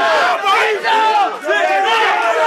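A crowd of men yelling and shouting over one another, a loud hyped reaction to a punchline that has just landed.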